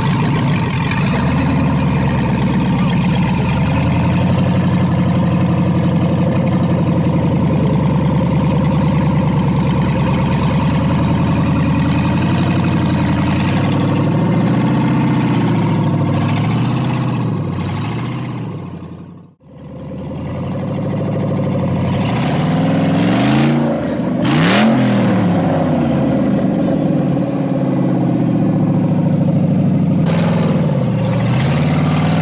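Off-road rock-crawling buggy's engine running steadily at low speed as it crawls over logs on a steep slope. About two-thirds of the way through the sound fades almost out for a moment, then the engine revs up and down a few times.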